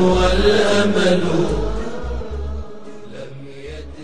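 Closing background music of chant-like voices on long held notes over low bass notes, fading out over the last couple of seconds.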